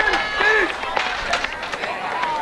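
Crowd of spectators talking and calling out over one another, with a few sharp taps of a hurdler's footfalls on the track.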